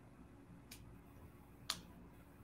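Near silence on a video call whose speaker's connection has frozen, broken by two short clicks, the second one near the end louder.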